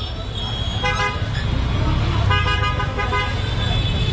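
Vehicle horns honking in busy street traffic: a short honk about a second in and longer horn blasts from about two to three seconds, over a steady rumble of engines.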